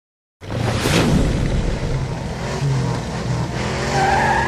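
A TV broadcast intro sting: race car engine noise mixed with music, starting abruptly about half a second in, with a whoosh sweep about a second in.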